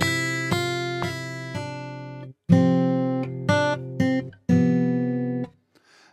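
Recorded MIDI playing back through a sampled software instrument with a plucked, guitar-like sound: a run of ringing chords struck about every half second to a second, with a brief gap a little after two seconds in, stopping shortly before the end.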